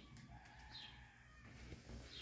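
Near silence, with a low background hum and one short, faint, falling bird chirp a little under a second in.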